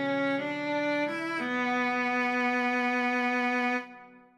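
Viola playing a short melody: a few quick stepwise notes, then a long held note with a slight vibrato that stops just before the end.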